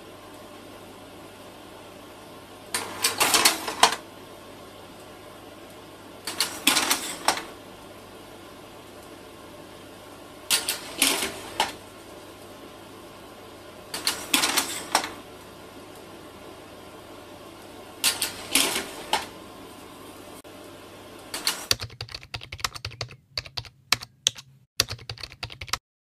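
Bursts of typing, rapid key clicks each lasting about a second, repeating about every three and a half seconds over a steady low hum and hiss. Near the end the clicks come choppier, with short gaps of silence between them.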